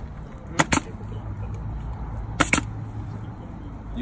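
Pneumatic stapler firing twice into the edge of artificial turf, each shot a sharp double crack, the first about half a second in and the second about two and a half seconds in.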